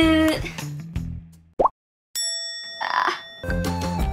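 Cartoon sound effects: a quick rising bloop, then a ringing sparkle chime. Cheerful children's background music with a beat starts up again near the end.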